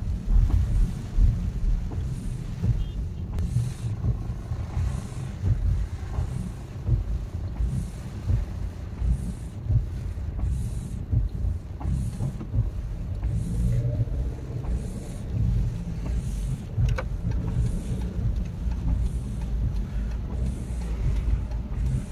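Steady rumble of a car driving on a wet road, heard from inside the cabin, with the windscreen wipers swishing across the rain-wet glass about once a second.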